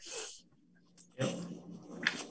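A short, breathy exhale into a laptop microphone, a faint click about a second in, then a quiet spoken "yep".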